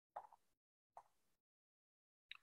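Near silence, broken by two faint short clicks about a second apart.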